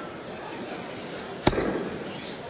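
A steel-tip dart striking a bristle dartboard, one sharp thud about one and a half seconds in.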